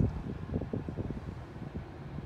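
Steady low rushing of air noise inside a car cabin, with faint rustling from the hand-held phone. A single sharp knock comes right at the start.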